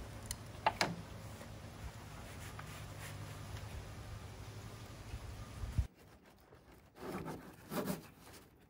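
Zipper of a nylon sail bag being worked by hand, with two sharp clicks about a second in over a steady low hum. After a cut, two short bursts of rustling as the sail is handled near the end.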